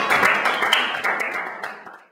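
Audience applause, a dense patter of many hands clapping, fading away over the last second.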